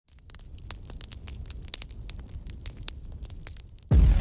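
Crackling fire sound effect: irregular sharp crackles over a low rumble. It is cut off by loud music starting abruptly just before the end.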